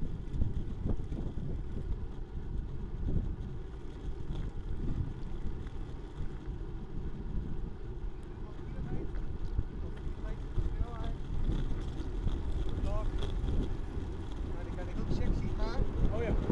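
Wind buffeting the microphone of a handlebar-mounted camera on a moving road bicycle: a steady low rumble. Faint short chirps come through in the second half.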